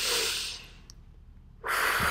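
A woman taking a deep breath in through her nose, a long sniffing inhale that fades out about a second in. Another rush of breath starts near the end.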